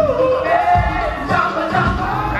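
Live yacht rock band playing: a singer's lead vocal over keyboard, electric guitar and a drum beat.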